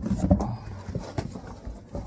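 Cardboard rustling and scraping with scattered clicks as a sneaker box is pulled out of a cardboard shipping carton, after a short low vocal sound at the start.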